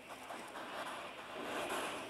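Young hedgehog curled in a hand, snorting in short noisy breaths, in two louder spells around the middle and near the end; the keeper takes the snorting as a healthy sign.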